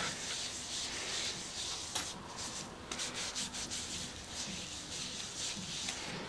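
A damp cleansing wipe rubbed over the face and cheek: faint, soft rubbing in uneven strokes.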